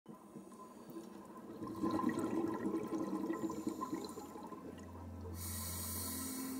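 Underwater bubbling, as of air bubbles rushing up through water, swelling about two seconds in and easing off again. A low steady drone comes in near the end.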